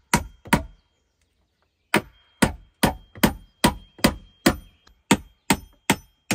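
Hatchet chopping at a wooden slab, sharp separate strokes. Two strokes come at the start, then after a pause of about a second and a half a steady run of about ten strokes, roughly two and a half a second.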